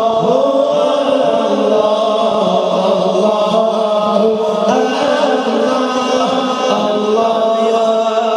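A male devotional singer chanting an Islamic naat through a microphone and PA, unaccompanied, in long held notes that glide between pitches.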